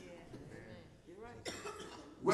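Faint, distant voices speaking quietly, with a brief sharp noise about one and a half seconds in.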